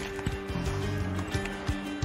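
Background music of steady held tones, with a few soft low knocks.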